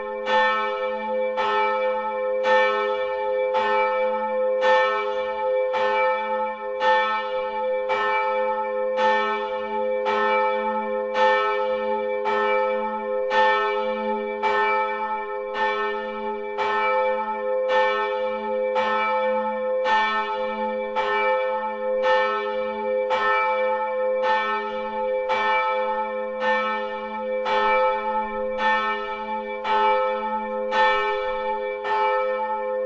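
Large bronze church bell ringing, its clapper striking in a steady even rhythm about every three-quarters of a second. Each strike lets a long, deep ring hang on beneath the next.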